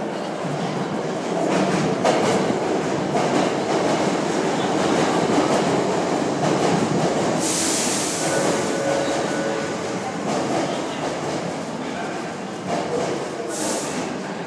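Hankyu 5300 series electric train running into a subway station platform: a loud, steady rumble of wheels and motors builds about a second in and carries on as the cars pass. A sharp hiss comes about halfway, and a shorter one near the end.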